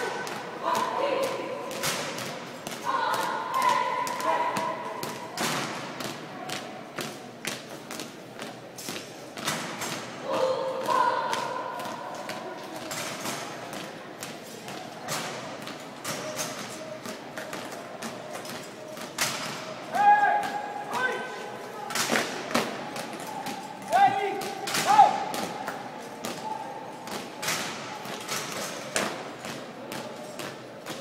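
Many feet stamping together as a drill team marches on a hard floor: a run of sharp thuds through the whole stretch. Voices call out now and then, near the start, a few seconds in, around the middle and again for a few seconds past the two-thirds mark.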